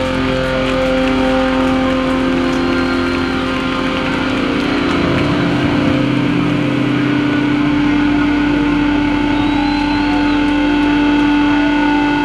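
Electric guitar and bass amplifiers left droning between songs: several steady held tones of amp feedback and hum, with a new higher tone joining about two-thirds through.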